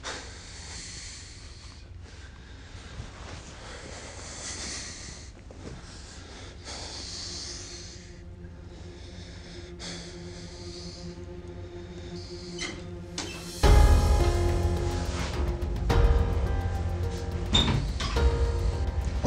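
A man's heavy breaths and sighs, then about fourteen seconds in a dramatic music cue comes in suddenly, much louder, with deep bass and sustained tones.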